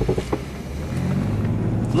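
Engine and road noise of a 1995 Jeep Cherokee Limited heard from inside its cabin while driving. The low engine drone grows louder about a second in.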